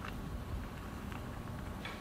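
Quiet room tone with a low rumble and a few faint, soft ticks.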